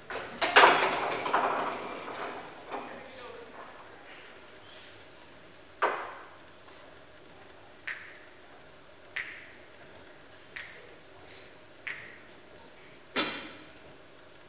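Sharp snaps with a little hall echo, six of them from about six seconds in, the last five evenly about 1.3 seconds apart, counting off a slow tempo before a jazz band comes in. Near the start, a brief noisy burst fades out over about two seconds.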